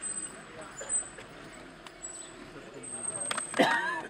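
A person laughing briefly near the end, over a low background of voices, with a few thin, high, whistle-like tones earlier on.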